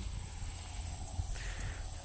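Outdoor field noise: a low rumble of wind or handling on the microphone and faint, irregular steps through grass, over a steady high-pitched drone.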